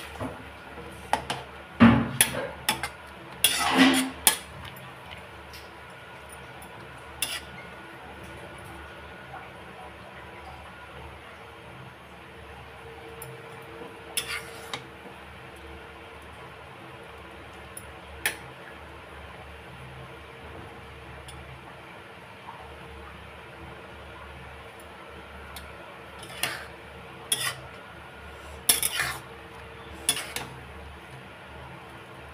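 Spatula clinking and scraping against a metal kadhai as chow mein noodles boiling in water are stirred and separated. A burst of clatters comes in the first few seconds, a few single knocks follow midway, and another burst of clatters comes near the end, over a steady low hiss.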